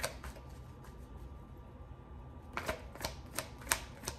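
A tarot deck being shuffled by hand, the cards clicking and slapping against each other. It is quiet briefly after a couple of clicks at the start, then a quick run of clicks begins about two and a half seconds in.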